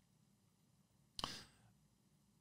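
Near silence: quiet room tone in a small studio, broken by one brief soft sound a little over a second in.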